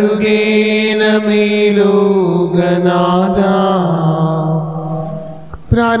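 Slow Malayalam devotional chanting: a voice holds long notes over a steady drone, stepping down in pitch and fading out about five seconds in.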